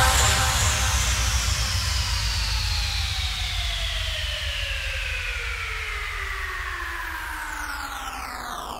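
Electronic music outro: a long synthesizer sweep gliding steadily down in pitch and fading out over a low rumble.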